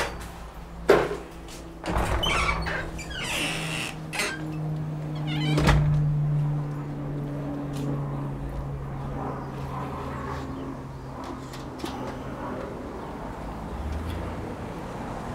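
A greenhouse door being opened and shut, giving a handful of knocks and thuds in the first six seconds, the loudest thud near the middle. A steady low hum runs underneath.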